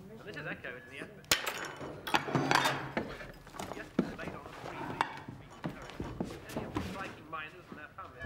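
Sharp knocks and clatter in a room among indistinct voices: one sharp knock a little over a second in, a louder clattering stretch about two seconds in, then more single knocks.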